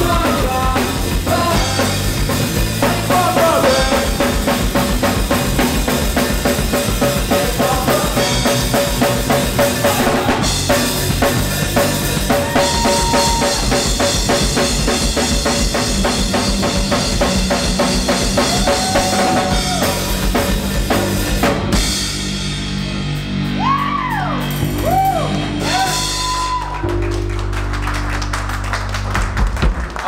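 Live punk rock band playing: electric guitars, bass and a full drum kit, with a singer. About two-thirds of the way through the drums drop out and the guitars and bass carry on alone with bending notes until the song stops at the very end.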